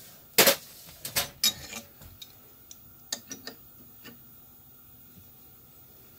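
Steel adjustable wrench clinking as it is picked up off the mill table and fitted onto a hand tap: one loud metallic clink about half a second in, then a scatter of lighter metal clicks and taps over the next few seconds.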